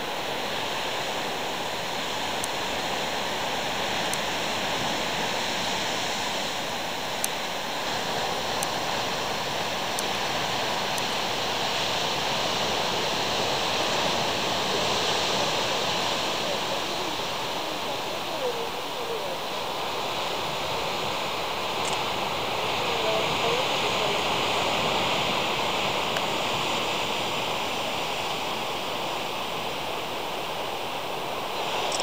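Sea surf breaking on rocks below a cliff, heard from above as a continuous wash of noise that slowly swells and eases.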